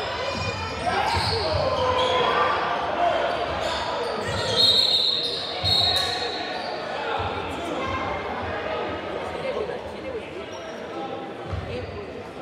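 Echoing gymnasium ambience at a basketball game: overlapping spectator and player voices with a basketball bouncing on the hardwood court. A brief shrill tone sounds about halfway through.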